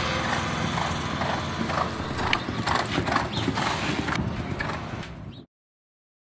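Hoofbeats of a horse galloping on a dirt race track, a run of irregular strokes that fades out to silence about five and a half seconds in.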